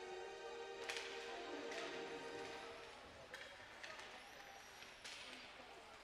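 A held note of arena music fades out in the first few seconds, over faint ice-rink sounds. A few sharp clacks, from sticks and puck on the ice, come as play restarts from a faceoff.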